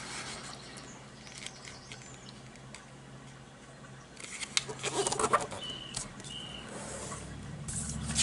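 A sheet of paper being folded in half and creased flat by hand: soft rustles and small clicks that start about halfway through, with two short high squeaks soon after.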